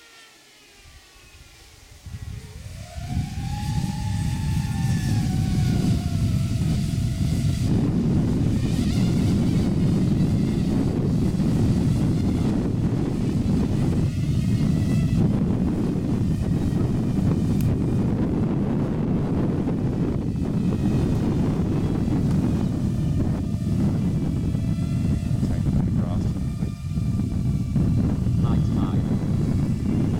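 Loud wind rumble on the microphone sets in about two seconds in. Over it, the electric lift motors of a small quadplane drone whine up and then back down in pitch as they spin up for the back transition to hover. Their fainter, wavering whine continues as it descends to land.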